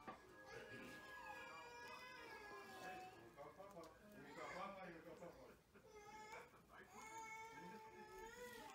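Faint, high-pitched voice-like calls in the background: a few long, wavering, drawn-out sounds over an otherwise quiet room.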